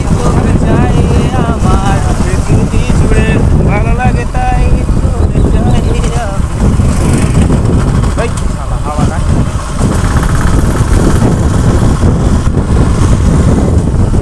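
Yamaha motorcycle riding at low speed, its engine running under heavy wind buffeting on the microphone. A voice is heard over it in the first half.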